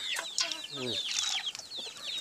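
A flock of chickens clucking and peeping as they peck at feed, with many short, high, falling peeps overlapping throughout.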